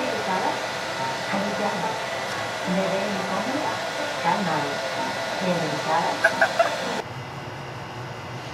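Blow dryer running into a soft bonnet hood attachment: a steady rushing hum, with a woman's voice sounding briefly over it. It cuts off suddenly about seven seconds in, leaving quieter room tone.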